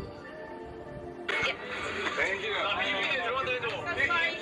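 Background music with sustained notes, cut off abruptly about a second in by a crowd of people chatting and talking over one another.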